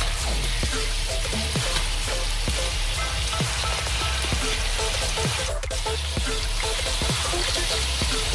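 Chicken pieces frying in a hot wok with a steady sizzle. A metal spoon stirs them and scrapes against the pan again and again.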